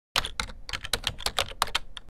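Typing on a computer keyboard: a quick, even run of key clicks, about eight a second.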